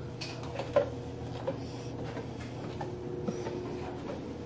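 Bare feet stepping down wooden stairs: a few soft knocks roughly a second apart, over a faint steady hum.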